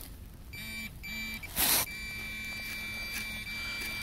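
Minelab Pro-Find pinpointer sounding its high electronic tone: two short beeps, then an unbroken tone from about halfway on, the sign that its tip is right against a metal target in the dug soil. A brief scuffing burst comes just before the tone turns steady.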